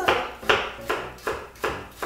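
A chef's knife slicing an onion into thin strips on a wooden cutting board: five crisp strokes, a little over two a second, each ending in a knock of the blade on the board.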